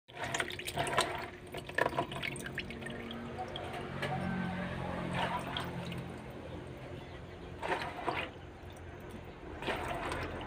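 Water splashing and sloshing as a hand swishes a basin of small anchovies (bolinaw) to wash them, with drips and wet handling noises. The splashing is busiest at the start. A low steady hum comes in about four seconds in.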